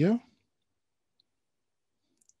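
A man's voice trailing off at the end of a word, then silence.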